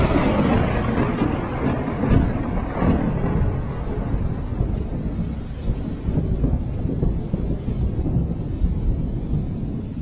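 Closing logo sound effect: a deep, rumbling rush of noise, loudest at the start and slowly fading away.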